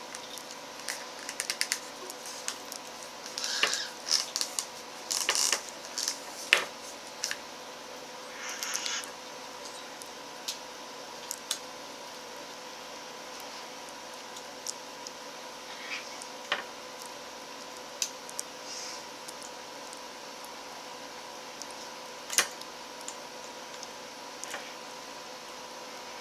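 Small metal clicks, taps and short scrapes of an antique lamp's metal bulb sockets being handled and worked apart by hand, busiest in the first several seconds and then sparse. A faint steady hum runs underneath.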